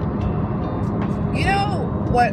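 Steady road and engine noise inside the cabin of a car moving at highway speed, with a woman starting to talk partway through.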